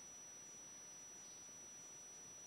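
Near silence: faint steady room tone and hiss, with a thin high-pitched steady tone.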